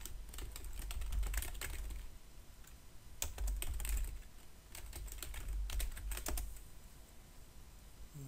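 Typing on a computer keyboard: quick keystroke clicks in three short spurts, with a low rumble underneath.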